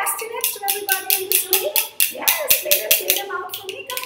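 Wooden khartals (Rajasthani hand clappers) clacking in quick, uneven clicks, several a second, with voices over them.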